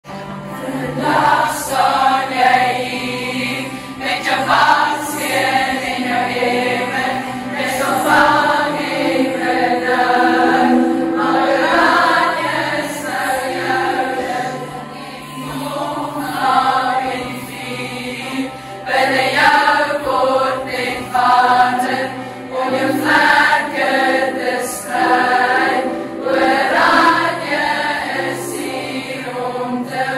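A large group of teenage girls singing together as a choir, in phrases that rise and fall.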